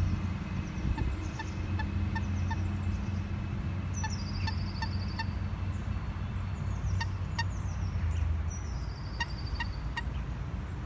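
Wild birds calling and singing: many short, high pips and chirps, with a long descending trill about four seconds in and again near the end. A steady low rumble runs underneath.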